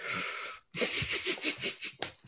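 A person laughing breathily: one long exhaled burst, then a quick run of short breaths.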